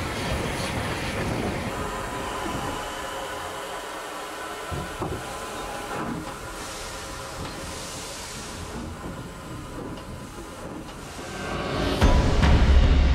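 Cab sound of a CGR 6th Class steam locomotive running slowly: a steady hiss of steam over the rumble and light clicking of the wheels on the rails, with a stronger burst of hiss from about six and a half to nine seconds in.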